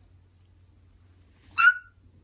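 A toddler's short, high-pitched squeal, once, about one and a half seconds in.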